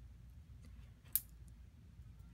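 Fingers pressing a small magnet onto the hot glue on a red plastic pacifier shield: quiet handling with one sharp click about halfway through and a few faint ticks.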